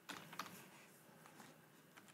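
Faint clicks of a computer keyboard as a few keys are typed, mostly in the first half second, with one more light click later.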